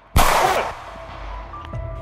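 A single gunshot right at the start, loud and sharp, with a long echoing decay. Background music with sustained notes follows.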